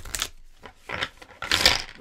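Tarot cards being handled: short rustling, papery bursts with light clicks, the loudest about a second and a half in.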